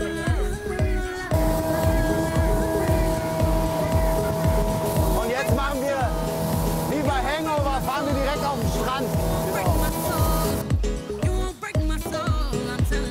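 Background music with a steady beat. From about a second in until near the end, a motorboat engine runs at speed over it, with steady rushing water and wind noise, and voices come through in the middle.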